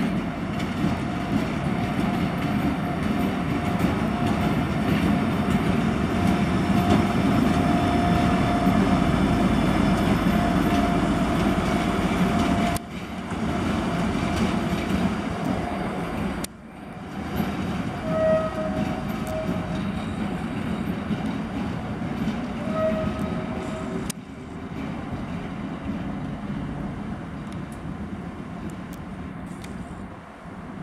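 ČD class 754 diesel-electric locomotive running under power at low speed: its V12 diesel engine gives a steady drone with a held whine, louder in the first half. In the second half the locomotive sounds two short horn toots a few seconds apart.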